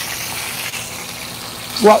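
Lamb chops sizzling in a hot skillet, a steady even hiss.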